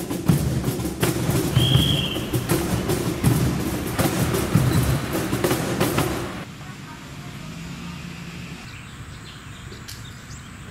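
Hand drumming on a wooden cajon, a steady run of sharp strikes with voices over it, that stops about six seconds in and gives way to a quieter steady background.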